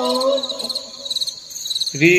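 Crickets chirping in repeated short high-pitched bursts, about two a second, with a voice fading out at the start.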